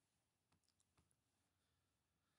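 Near silence, with two very faint clicks about half a second apart near the middle.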